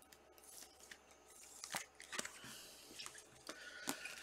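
Trading cards and clear soft plastic card sleeves being handled: faint plastic rustling with a few sharp clicks as a card is slipped into a sleeve and stacked with other sleeved cards.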